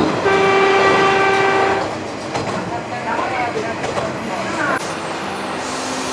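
Joso Line diesel railcar's horn sounding once, a single steady tone of about a second and a half, then the train running along the track.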